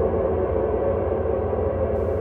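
A steady, low drone with a deep hum underneath, holding even with no beat or melody.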